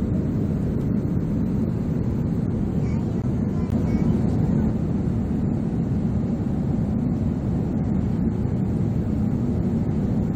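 Airliner cabin noise inside an Airbus A350-900: a steady low rumble of engines and air flow that holds even throughout.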